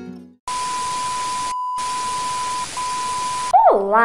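A static-noise sound effect: loud even hiss with a steady single-pitch beep tone over it, like a TV test signal. It cuts out briefly about one and a half seconds in, then stops just as a woman's voice begins near the end.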